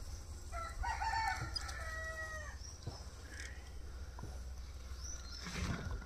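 A rooster crowing once: a single drawn-out call of about two seconds that drops in pitch at its end. A dull bump near the end.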